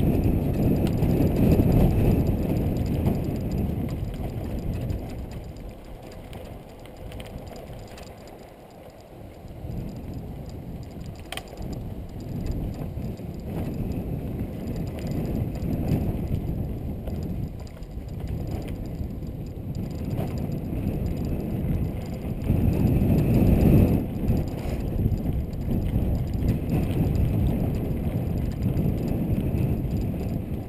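Mountain bike rolling over a rough dirt trail, with a low rumble and rattle of tyres and frame that swells and fades with the terrain: louder near the start and again near the end. There is one sharp click about eleven seconds in.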